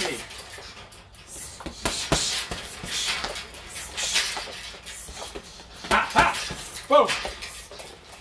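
Gloved uppercuts and knee strikes landing on a hanging teardrop uppercut bag, a series of thuds a second or two apart, with sharp exhaled breaths between them. A short shout of "Boom!" comes near the end.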